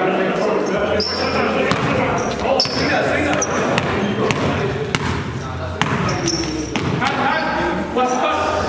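Indoor basketball game: a basketball bouncing on a gym floor, with sharp short sneaker squeaks and players' voices calling out in an echoing hall.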